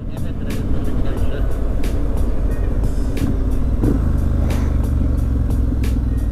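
A Triumph Street Scrambler's 900 cc parallel-twin engine running at a steady cruise, heard from the handlebars with wind rushing over the microphone and the occasional gust buffeting it.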